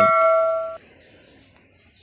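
Bell-chime sound effect for a subscribe-button notification bell, ringing out with several clear tones and cutting off abruptly just under a second in.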